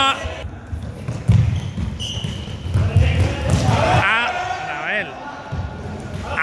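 Running footsteps thudding on a sports-hall court floor, with short shouts from players echoing in the hall.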